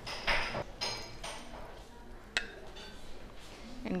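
Spatula scraping caramelized apple pieces out of a bowl onto dough: two short scrapes with a light clink of the bowl, then a single sharp tap about halfway through.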